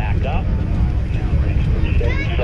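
Distant rumble of Space Shuttle Endeavour's launch, its solid rocket boosters and main engines heard many miles off as a steady, crackling low roar, with people's voices over it.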